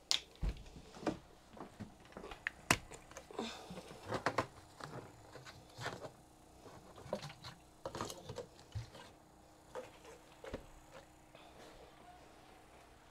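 Irregular soft knocks and clicks of plastic jugs and tubing being handled, as a pump's suction hose is moved from an empty RV antifreeze jug into a full one.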